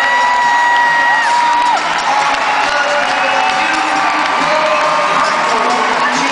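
Velodrome crowd cheering steadily, with several long, high held whoops or whistles rising over the noise, the loudest one right at the start, lasting about a second and dropping in pitch as it ends.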